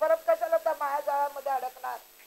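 A woman speaking steadily, her voice thin with no low end.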